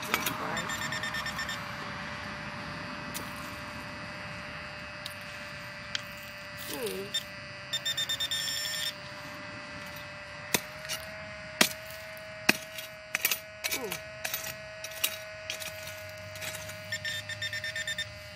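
Handheld metal-detector pinpointer beeping in fast bursts as it is pushed into the dug soil, signalling a metal target, with clicks and scrapes of a digging tool in dirt and stones. A faint steady tone runs underneath.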